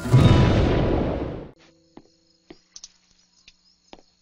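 A loud crash-like sound effect closing an animated logo intro, dying away over about a second and a half. It is followed by near silence with a few faint clicks.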